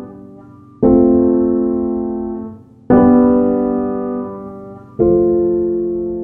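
Slow, soft piano music: three chords struck about two seconds apart, each left to ring and fade.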